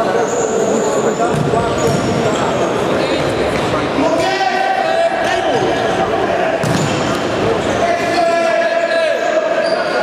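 Futsal ball being kicked and bouncing on a hard sports-hall floor, with short high shoe squeaks and players shouting in stretches, all echoing in the hall.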